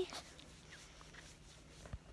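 A small dog whimpering faintly a couple of times, short high squeaks, at close range, with a low bump near the end.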